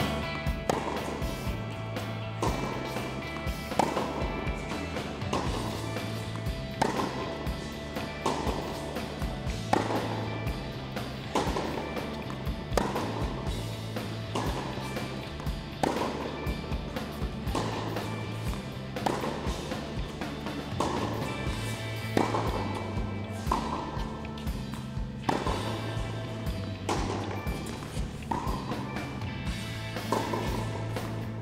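Background music with a steady bass line, over a tennis rally: sharp racquet-on-ball strikes recurring about every second and a half.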